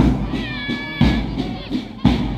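Marching band music: a bass drum beating about once a second, with a high held note sounding briefly about half a second in.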